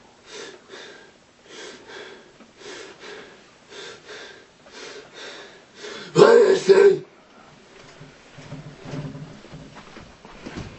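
A young man's wordless vocal sounds in short bursts, about two a second. About six seconds in comes a single loud shout lasting under a second, followed by quieter low sounds of movement.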